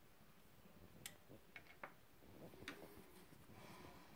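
Near silence with about four faint clicks between one and three seconds in and a faint rustle near the end, from hands handling small craft tools and foam pieces on a table.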